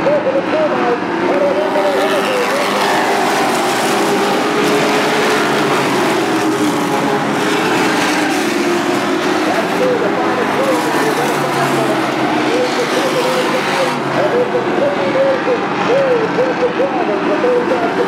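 A field of NASCAR race trucks running at racing speed together around a short oval, a steady, dense, continuous engine noise with no break.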